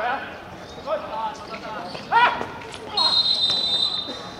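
Football players shouting on the pitch, with a loud call a little after two seconds. About three seconds in, a referee's whistle blows one steady, high blast about a second long, stopping play as a player goes down.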